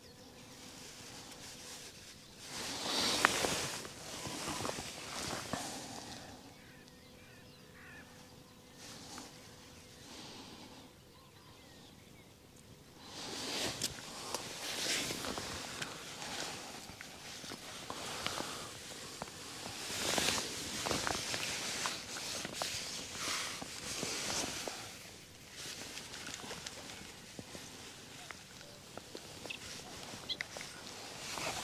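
Rustling and handling noise as an angler moves about with a float rod on a grassy bank, in several bursts a few seconds long with quieter stretches between.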